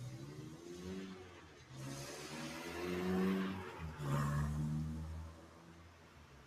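A car driving past on the street, its engine note climbing and stepping as it accelerates through gear changes, with tyre hiss loudest a few seconds in; it fades away about five seconds in.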